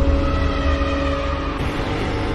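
Cinematic intro sound effect: a deep rumble under several held tones, easing slowly.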